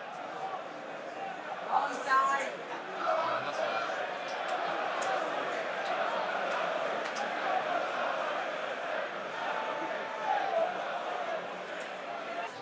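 Crowd at a football match: a steady babble of many voices, with a nearer voice briefly rising above it about two seconds in and again near the end.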